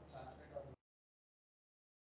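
Near silence: a faint trailing murmur for under a second, then the audio drops out to dead digital silence.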